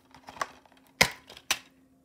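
Plastic DVD case being handled and snapped open: a few light ticks, then two sharp clicks about half a second apart, the first the loudest.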